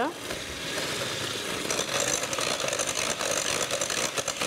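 Electric hand mixer running steadily, its beaters whisking an oil and sugar mixture in a glass bowl; a higher whine joins about halfway through.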